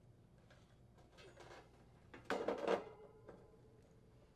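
Condenser fan motor being set in place against the air conditioner's grille cover: a soft scrape about a second in, then a louder short clatter of metal a little past halfway, and a small click after.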